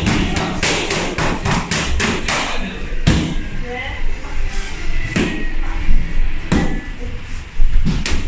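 Boxing gloves striking handheld Thai pads. A rapid flurry of smacks comes in the first two and a half seconds, then single, harder hits about every one to two seconds.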